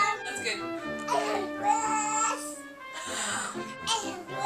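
A toddler's high, whiny voice, close to crying, over background music with long held notes.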